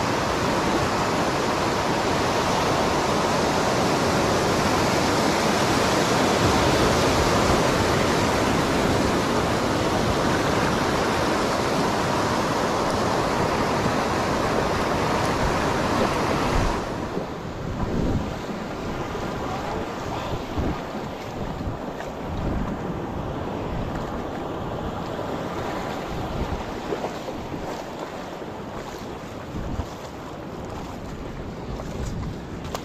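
Surf washing in over a shallow beach, with wind rushing on the microphone. About seventeen seconds in, the noise drops suddenly and turns quieter and duller, with a few short knocks after that.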